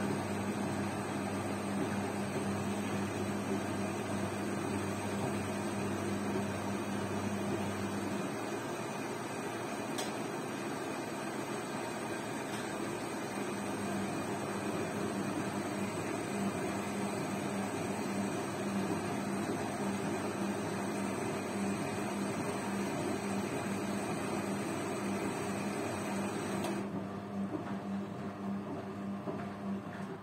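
Zanussi front-loading washing machine humming steadily with a strong low tone while the drum stands still. This is typical of the drain pump running. Near the end the hum drops away.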